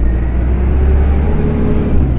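An open-sided tour bus driving along, heard from on board: a steady, loud low rumble of engine and road noise with a faint whine above it.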